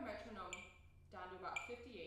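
Faint, indistinct talking, too quiet to make out words.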